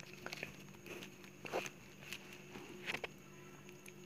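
Flat plastic craft wire rustling and clicking irregularly as strips are threaded and pulled through a woven basket, over a faint steady hum.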